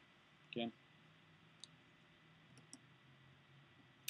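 Near silence with a few faint, sharp clicks from a laptop as its page is scrolled: one early on the way, a quick pair a little later, and a sharper one at the very end.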